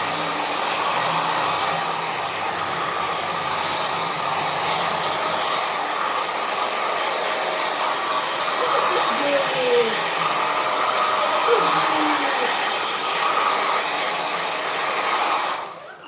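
Handheld hair dryer blowing with a steady rush of air, switched off near the end.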